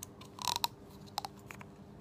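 Small plastic clicks and a brief rustle as a needle's plastic hub is pushed onto the tip of a large plastic syringe. There is a short rustle about half a second in, then a few light clicks spread over the next second.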